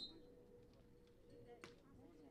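A referee's whistle cuts off right at the start. About a second and a half later comes one sharp smack of a hand striking a beach volleyball on the serve, faint against a quiet background.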